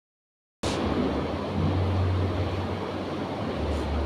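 Steady rumbling background noise with a low hum, cutting in abruptly about half a second in and holding level.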